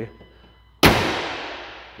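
The hood of a 2024 Dodge Durango slammed shut: one sharp bang a little under a second in, followed by an echoing tail that dies away over about a second.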